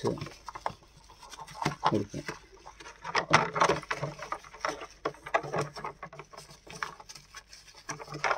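A sponge rubbed and wiped around the inside of a wet plastic tray, making a series of short, irregular rubbing strokes.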